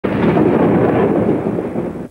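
A loud, dense rumbling noise without any clear tone.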